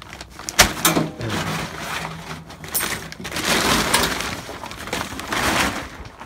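Blue plastic tarp pulled off and bunched up by hand, crinkling and rustling with sharp crackles, with a loud crack about half a second in.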